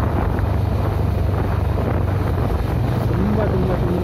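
Wind buffeting the microphone of a moving vehicle, over a steady low rumble.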